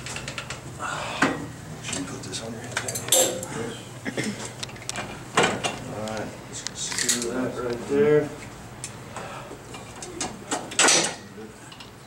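Metal clinks and knocks from a leg extension machine's pad and lever adjustment being worked by hand: several sharp knocks a second or two apart.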